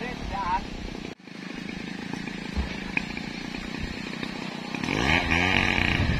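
Men's voices calling out while heaving heavy logs up onto a truck, over a steady engine hum. The sound drops out for an instant about a second in.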